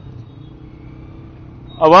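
A pause in a man's speech, filled only by a faint, steady low background hum. His voice resumes near the end.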